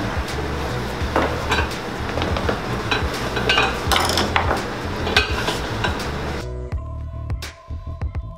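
Metal hand tools clinking and knocking on a wooden workbench as a shoe on a last is handled, over background music. About two-thirds of the way through, the busier workshop noise cuts off, leaving the music and a few clicks.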